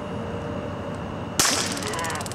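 A taser fires with a sudden sharp crack about one and a half seconds in. The crack runs straight into a rapid, even crackle of clicks as the taser delivers its electrical pulses.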